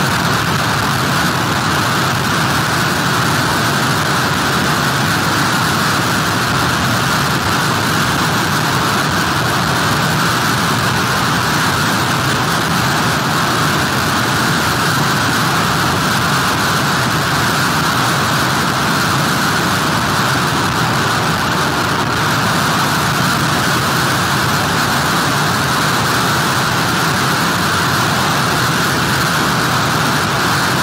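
Loud, steady roar of hurricane wind and heavy surf, unbroken throughout.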